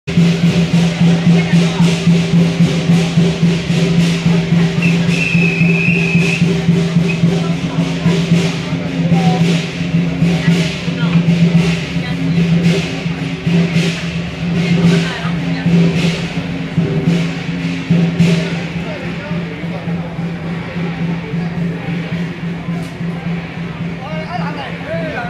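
Temple procession percussion, drums and cymbals beating a steady rhythm over a continuous low hum, with crowd voices. The strikes are loudest in the first half and fade somewhat after about three quarters of the way.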